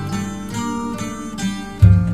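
Instrumental introduction of a 1960s Greek film song: a quick melody picked on plucked string instruments, about four notes a second, over a moving bass line, with a strong low bass note near the end.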